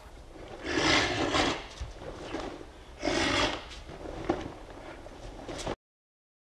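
Two loud karate kiai shouts, the first about a second long near the start, the second shorter about three seconds in, with a short sharp click a second later. The sound cuts off suddenly just before the end.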